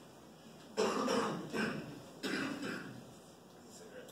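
A person coughing twice: the first cough comes about a second in and lasts about a second, and the second, shorter one comes a little past two seconds.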